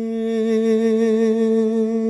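A male voice holding one long, steady sung note on the last word of an unaccompanied nazm.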